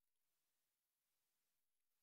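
Near silence: only a very faint, steady hiss.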